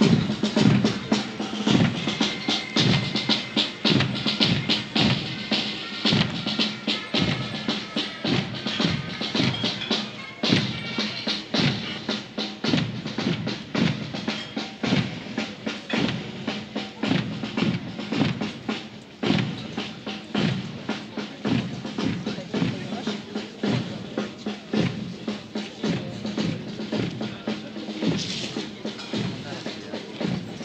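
Military band playing a march with a steady bass and snare drumbeat, with some held band notes in the first ten seconds, as ranks march past in step.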